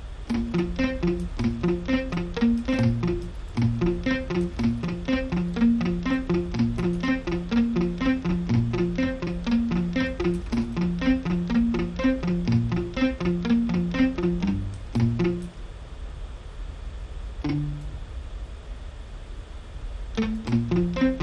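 Sampled muted guitar from a Kontakt session-guitar library playing a quick, repeating pattern of short plucked notes, about four a second, as a chord progression is tried out. The pattern stops about fifteen seconds in, and one more note sounds near the end.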